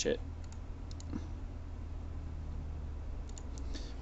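Computer mouse clicking: a couple of faint clicks about half a second in, then a quick run of clicks near the end, over a low steady hum.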